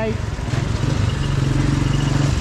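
Motorcycle engine running, a steady low putter, over the general noise of a busy street.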